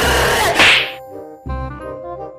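Skateboard running through shallow water, a loud hiss of spray that surges just after half a second in and dies away by about a second, with background music under it.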